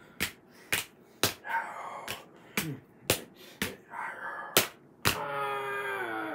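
A run of about eight sharp slaps at irregular intervals, picture books being smacked together as they 'fight' a round, with faint vocal sounds between them and a drawn-out voice sound near the end.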